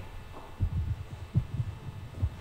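Handling noise from a handheld microphone being carried: irregular low thuds and bumps, the loudest about half a second and about a second and a half in, over a steady low hum.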